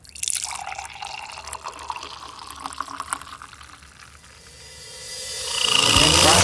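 Coffee being poured from a glass carafe into a ceramic mug: a splashing stream that starts suddenly and slowly tapers off. Near the end a louder sound swells up.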